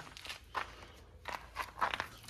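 A few scattered footsteps on gravel.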